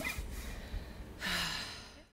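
A person's breathy exhale, a short sigh with a little voice in it, about a second in, fading away.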